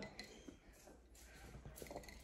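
Near silence: room tone, with only a few faint small clicks.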